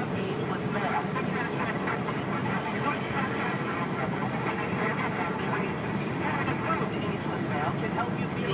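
Steady road and engine noise heard from inside a moving car's cabin, with faint talk underneath.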